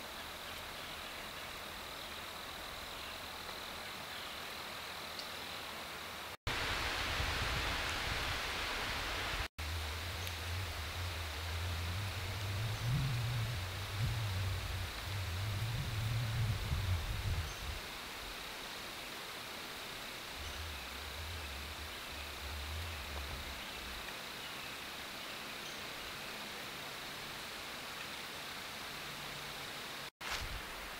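Quiet outdoor woodland background with a steady hiss. For several seconds in the middle, low rumbling sounds hit the microphone. The background jumps abruptly twice.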